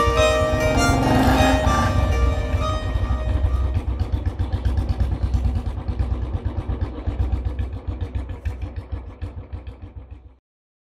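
Background music fading out: melodic notes over a low rumbling bed for the first two seconds or so, then only the low rumble, growing fainter until it cuts off at the very end.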